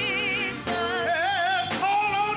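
Gospel praise team of several voices singing held notes with strong vibrato, accompanied by keyboard.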